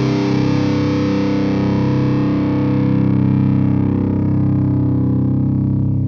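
Seven-string electric guitar through an Egnater SilverSmith distortion pedal: one heavily distorted chord held and ringing out steadily, with no new notes picked.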